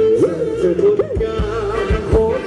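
Live Thai ramwong dance-band music: a lead melody sliding up and down in pitch over a steady drum beat.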